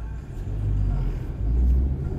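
Low rumble of a car's engine and road noise heard from inside the cabin while it is driven, swelling briefly near the end.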